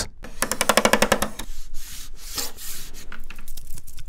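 Polivoks synthesizer nameplate handled and rubbed right up against a microphone: a rapid, even run of small clicks for about a second, then rough scraping and rubbing noises.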